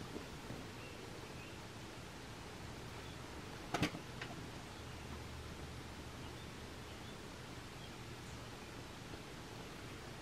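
Quiet room with a faint low hum. One sharp click about four seconds in, followed by a fainter tick.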